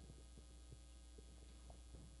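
Near silence: a steady low hum of room tone, with a few faint, short knocks.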